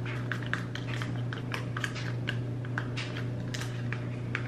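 Metal spoon stirring powdered peanut butter and oat milk in a small plastic container: quick, irregular light clicks and scrapes, several a second.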